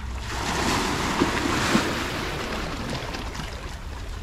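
Sea waves washing against a rock jetty, one swell of surf building over the first second or two and then easing off, with wind rumbling on the microphone underneath.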